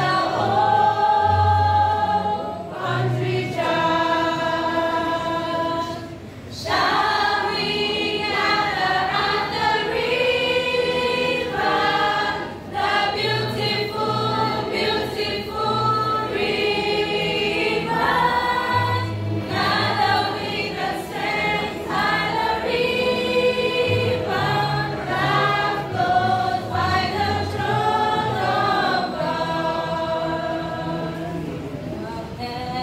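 A youth choir singing a song together in many voices, the phrases dipping briefly about six and twelve seconds in.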